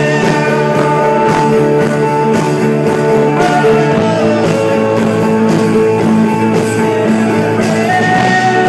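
A live rock band playing an instrumental passage: strummed acoustic guitar and electric guitar over drums, with held lead notes that slowly shift in pitch.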